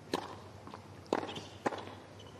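Tennis ball struck by rackets three times in a doubles rally: the serve's sharp hit at the start, then two more hits a second or so later, half a second apart.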